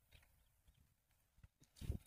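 Near silence with a few faint handling clicks, then one brief knock near the end as two wireless earbuds are pushed down into a glass of water.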